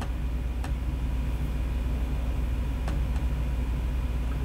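Steady low background hum with two faint clicks, about half a second in and about three seconds in, fitting mouse clicks as the YouTube settings and quality menus are opened.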